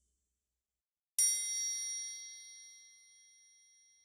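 A single bright metallic ding, a struck chime-like tone, hits about a second in after silence and rings out, fading slowly over about three seconds.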